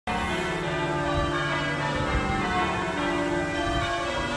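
Church tower bells ringing a peal: several bells struck in quick succession, their tones overlapping and hanging on in a steady wash of ringing.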